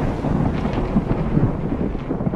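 The rumbling tail of a loud thunder-like boom, fading gradually with scattered crackles.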